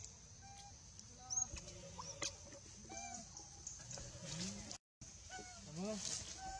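Scattered short animal calls, some bending up and down in pitch, with a few sharp clicks, over a steady high-pitched drone. The sound cuts out briefly near the end.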